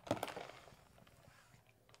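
Foamy espresso martini pouring slowly from a metal cocktail shaker through its strainer into a glass: a couple of light clicks and a faint trickle just at the start, dying away soon after.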